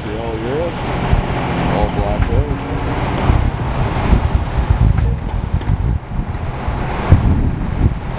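City street traffic: a low, uneven rumble of passing cars, with wind buffeting the microphone.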